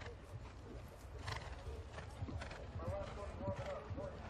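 Hooves of a show jumper cantering on grass, thudding in a steady rhythm. In the second half come short, repeated pitched sounds, which may be the horse or a distant voice.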